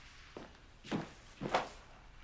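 Footsteps across a room floor: three soft steps about half a second apart.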